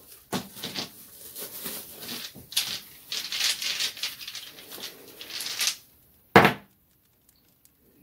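Divination dice being shaken in the hand, an irregular clattering rattle for about six seconds, then one sharp knock as they are cast.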